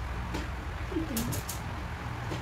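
A bird cooing once, a short low call that falls in pitch about a second in, over a steady low hum, with a few faint ticks.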